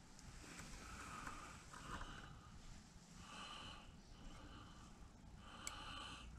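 Near silence with soft breathing through the nose, in several quiet breaths, and one light tick near the end.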